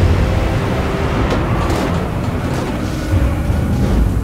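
Film-trailer sound design: a loud, continuous low rumble of a storm-wrecked tanker and heavy seas, under sustained music.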